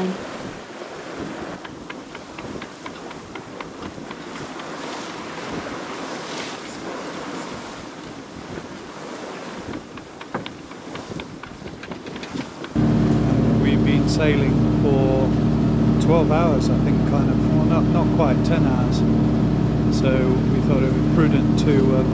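Water rushing along a sailing yacht's hull under sail, with wind on the microphone. About thirteen seconds in it cuts abruptly to the steady drone of the yacht's inboard engine running.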